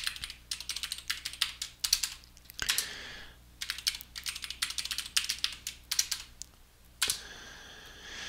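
Computer keyboard typing in two quick runs of keystrokes: a password entered at a prompt, then typed again for confirmation. A short, soft noise comes between the runs and again near the end.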